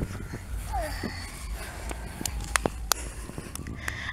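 Outdoor ambience with a steady low rumble of wind on the microphone and a few sharp clicks of the camera being handled, about two and a half to three seconds in. A faint, short falling sound comes about three quarters of a second in.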